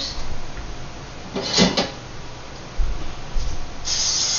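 Kitchen handling noises, a short clatter and a few low thumps, as a can of cooking spray is fetched; near the end, the steady hiss of the cooking spray starts as it is sprayed into a loaf pan.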